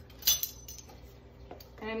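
Metal measuring spoons clinking together as they are picked up off a stone countertop: one sharp, ringing clink about a quarter second in, then faint handling noise.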